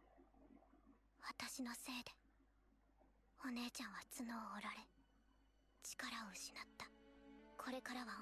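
Faint Japanese dialogue from the anime, short spoken lines with pauses between them, with quiet background music coming in about halfway through.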